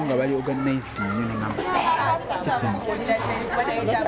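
Speech in a language the recogniser did not transcribe, over background chatter and music.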